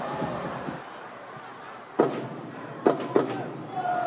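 A football being kicked on the pitch: sharp thuds of passes, the first about two seconds in, then two close together near the three-second mark, over stadium ambience.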